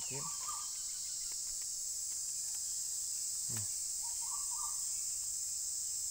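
Steady, high-pitched drone of insects, unbroken throughout.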